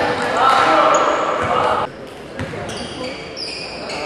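Voices of players and spectators in a gymnasium, with a basketball bouncing on the hardwood floor. The voices are loudest for the first two seconds, then drop away.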